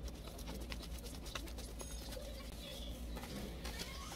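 Paper dollar bills rustling and flicking as they are counted by hand, a scatter of short crisp ticks over a low steady hum.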